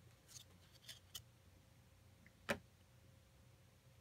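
A stack of baseball trading cards handled by hand as one card is slid to the back: a few faint rustles and light ticks of card stock, with one sharper click about two and a half seconds in.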